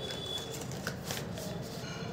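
Small cardboard box from a smartphone's packaging being handled and opened: papery rustling with a few short, sharp scuffs, around a second in and again near the end.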